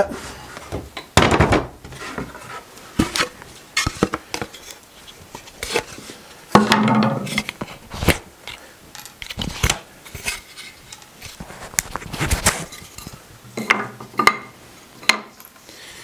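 Wooden boards and tools knocking and clattering as they are rummaged out of a box and handled: a string of irregular sharp knocks and clicks with short scrapes between them.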